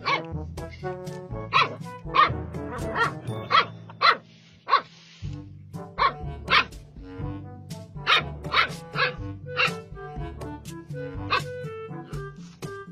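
A dog barking repeatedly, short sharp barks about every half second with a pause of about a second midway, over background music.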